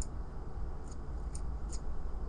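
Light metallic clicks from the spring mechanism inside a fish-shaped Chinese trick padlock as its key is worked. There are four short clicks: one at the start and three in the second half.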